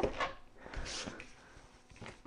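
Faint handling sounds of a latex 260 twisting balloon on a hand balloon pump, with a short puff of air about a second in, just after the balloon has been inflated.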